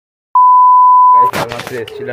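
A loud, steady electronic beep at one high pitch, just under a second long: an edited-in censor-style bleep. A man's voice starts as it ends.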